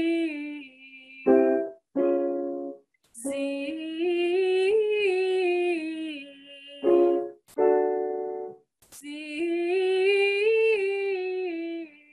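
Woman's voice singing a sustained, buzzy "zee" vocal warm-up that climbs a short scale and comes back down. The run is heard twice in full, after the end of an earlier one. Short keyboard chords sound between the runs, giving the next starting pitch.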